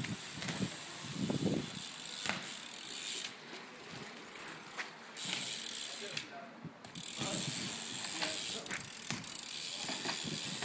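BMX bike riding, its rear hub freewheel ticking as it coasts, with stretches of rushing noise from the tyres and air that drop out twice.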